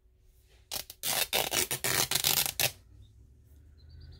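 Old woven fabric being torn by hand into a strip along the grain: one rip of about two seconds, starting under a second in, made of rapid fine crackles.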